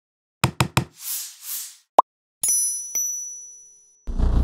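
Channel logo-intro sound effects: three quick sharp knocks, two soft whooshes and a short pop. Then a bright bell-like chime is struck about two and a half seconds in, with a lighter second strike, and rings out, fading.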